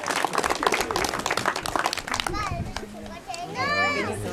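A group of people clapping for about the first two seconds, then a crowd of voices, children among them, with one high voice calling out near the end.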